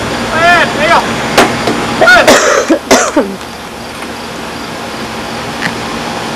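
A baby's high-pitched squeals and babbling: a few short rising-and-falling calls, then a louder burst about two seconds in, with a couple of sharp clicks, before it goes quieter for the second half.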